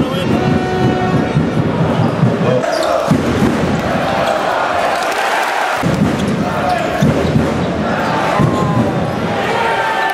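Music with a beat for the first two and a half seconds or so, then live basketball game sound in an arena: the ball bouncing on the court amid crowd noise and shouting voices.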